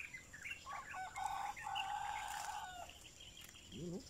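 Rooster crowing: a few short notes, then one long held note lasting over a second.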